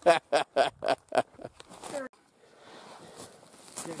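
A man laughing in short, quick bursts for about a second, then after a pause faint outdoor background noise.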